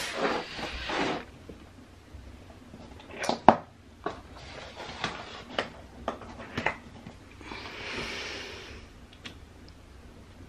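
Handling noises: a scatter of sharp knocks and clicks, the loudest about three and a half seconds in, then a soft rustle lasting a second or so near the end.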